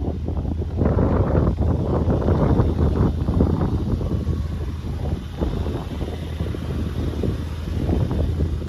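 Wind buffeting the microphone: an irregular low rumble over a steady low hum.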